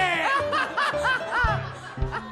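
A man laughing heartily over music with a steady low bass line.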